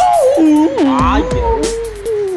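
A person's voice holding a long, wavering howl that slides up and down in pitch.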